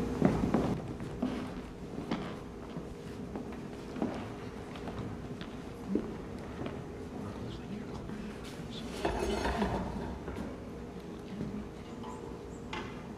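Scattered light knocks and clicks of handling and footsteps on a wooden stage floor, over a faint steady hum, with a brief rustling noise about nine seconds in.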